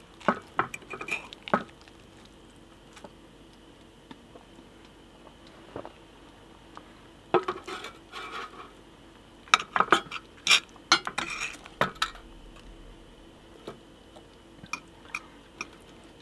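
A metal fork and a wooden spatula scraping and clinking against a cast-iron Dutch oven and a plate as portions of baked lasagna are lifted out and served. The clinks come in scattered bursts: a few in the first second or two, then a busier run from about seven to twelve seconds in, with a quiet stretch between.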